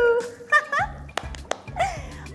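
Children's music: a high voice in short gliding notes over a pulsing bass line, with two sharp clicks a little past the middle.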